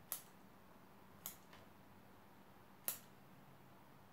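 Small scissors snipping side shoots off a juniper stem: three sharp snips a second or more apart, with near silence between them.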